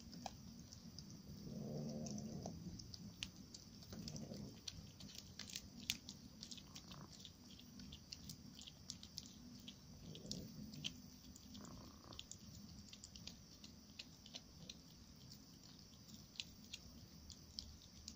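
Orange-and-white domestic cat chewing a freshly caught rodent, with faint crunching clicks scattered through the middle. A short low growl comes about two seconds in, and shorter ones around four and ten seconds.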